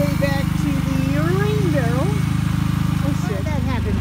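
Steady low engine drone from the running generator that powers the water transfer pump, easing briefly near the end, with high wavering whines over it.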